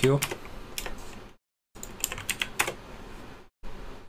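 Typing on a computer keyboard: an irregular run of key clicks while code is entered, broken by two brief drops to dead silence.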